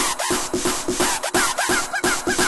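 Breakdown of a Rotterdam hardcore (gabber) track, quieter and without the heavy kick drum: a fast, rasping electronic percussion pattern of about five hits a second. From about halfway in, short wavering synth notes join it.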